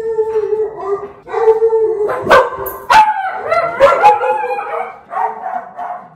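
A voice holding one long, steady note that breaks off briefly and resumes, then sharp clicks about two, three and four seconds in among wavering vocal sounds.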